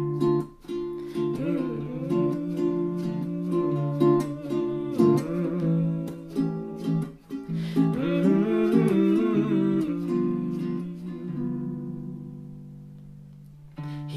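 Acoustic cover music: plucked acoustic guitar with wordless humming and vocalising, no sung lyrics. It dies away to a fading held note over the last few seconds.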